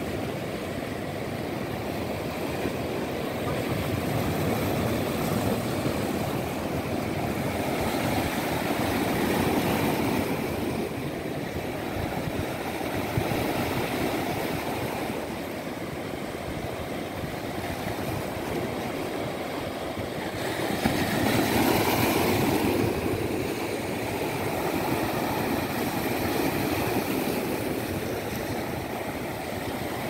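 Ocean surf: waves breaking and washing in, a steady rush that swells twice, loudest about three quarters of the way through.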